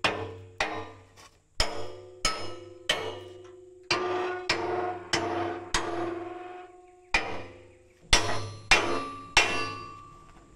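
Hammer blows on a steel loader bucket, an irregular string of sharp metal strikes about every half second to second, each ringing and fading off.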